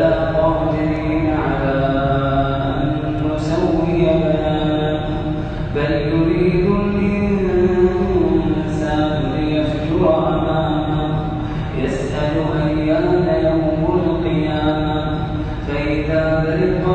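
A man reciting the Quran in melodic chanted style (tajweed), each verse sung as a long phrase of held, bending notes. The phrases are separated by short pauses about every two to four seconds.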